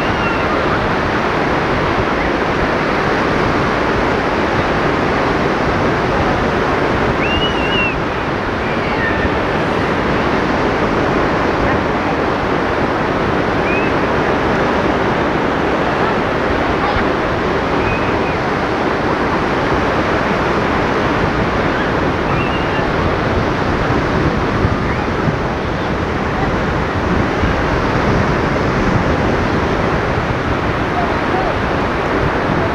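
Sea surf washing onto a beach: a steady, continuous rush of breaking waves. A few faint, short high chirps come through it now and then.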